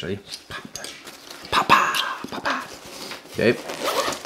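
Backpack straps and plastic buckles being undone by hand: scattered sharp clicks and fabric rustling, with a short, louder burst of noise about halfway through.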